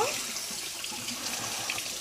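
Steady, even hiss of kitchen background noise.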